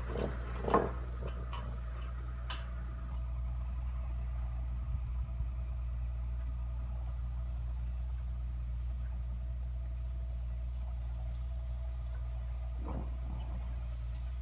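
Steady low mechanical hum of a moving center-pivot irrigation tower, with a couple of faint clicks, one just after the start and one near the end.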